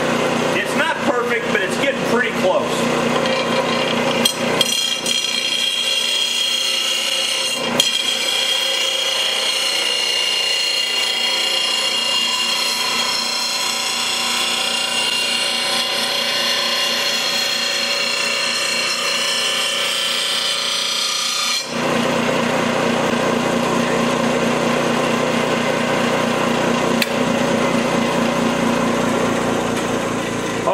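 Steel lawn mower blade ground against the wheel of a running JET bench grinder, a steady grinding whine with a sudden change in sound about two-thirds of the way in. This is the final sharpening pass, bringing a dull, rounded-off edge to a sharp bevel.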